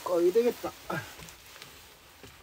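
A brief, indistinct spoken utterance in the first second, followed by quiet room noise.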